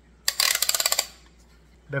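Plastic light pole of a LetPot Air hydroponic garden being slid along its height-adjustment notches. It makes a quick run of rapid clicks lasting under a second.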